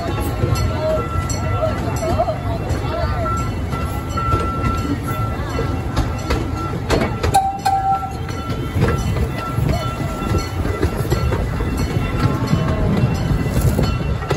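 Amusement-park train riding along, heard from on board: a steady low rumble of the wheels and running gear, with a short burst of clacking a little before halfway and a brief tone just after.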